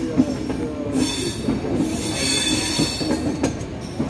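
Passenger train coaches rolling out of a station, heard from on board: a steady rumble of steel wheels on rail, with a high-pitched wheel squeal over it and a few sharp clicks.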